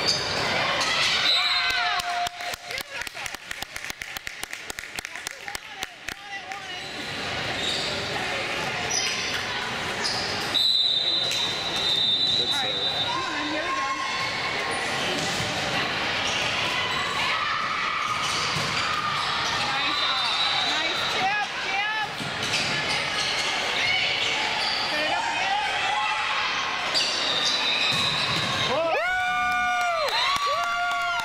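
Indoor volleyball rally in a large gym: the ball struck again and again, sneakers squeaking on the court floor, and players and spectators calling out.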